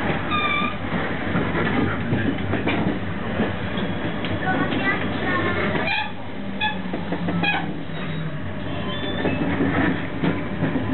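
Rumble of a passenger train heard from inside the carriage as it rolls through a station, with scattered voices mixed in. There is a short pitched squeal right at the start.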